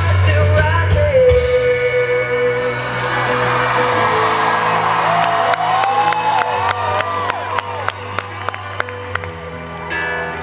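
Live band music with vocals: a singer holds one long note in the first few seconds. In the second half the music thins and the crowd whoops and claps.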